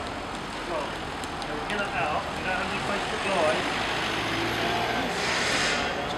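Urban street traffic noise with background voices chatting; a loud rush of hiss swells about five seconds in and fades near the end.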